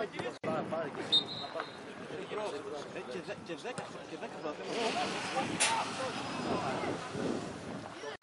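Several voices talking at a football pitch, with a short, high referee's whistle blast about a second in. A sharp knock comes a little past halfway.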